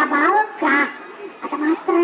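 A person's voice amplified through a microphone, in short pitched syllables with no clear words.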